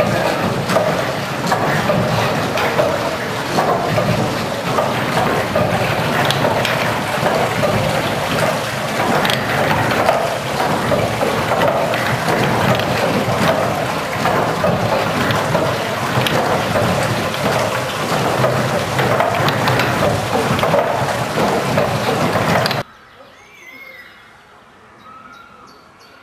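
Old wooden mill machinery running: a loud, steady rush of water mixed with irregular wooden knocking from the gearing and stampers. It cuts off suddenly about 23 seconds in, leaving a much quieter background.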